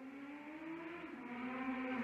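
A man's voice holding one long, drawn-out vowel as a hesitation sound while searching for a word; the pitch rises gently over the first second, then holds steady.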